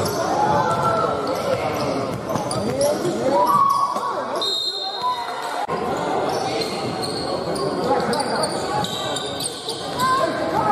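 Basketball dribbling and bouncing on a hardwood gym floor, with shouting and chatter from players and spectators echoing in a large hall.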